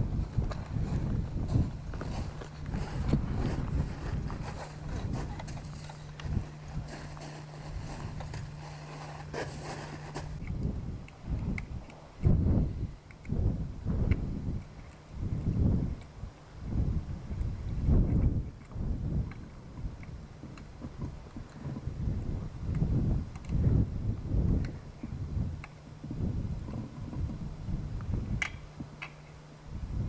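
Wind buffeting the microphone in irregular low gusts, about one a second in the second half, with a steady low hum under it for the first ten seconds and again near the end.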